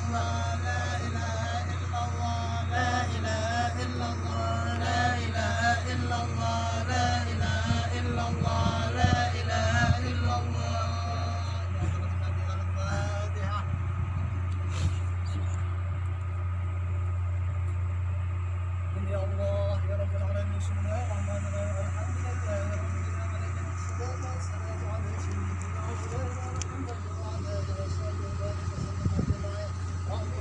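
A male voice singing for about the first ten seconds, then fainter talking, over a loud steady low hum.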